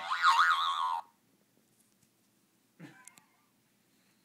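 A bouncy pillow's springy boing, about a second long, wobbling up and down in pitch before it cuts off. A shorter, softer sound follows about three seconds in.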